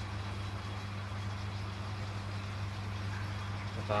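Steady low hum of reef aquarium pumps, with an even hiss.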